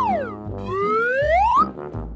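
Children's background music with a cartoon whistle sound effect sliding down in pitch, then a longer whistle sliding back up.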